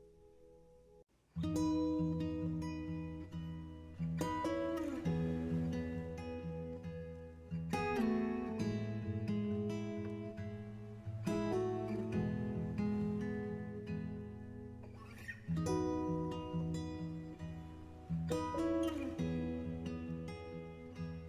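Background acoustic guitar music, strummed and plucked chords, starting about a second in after a faint held tone.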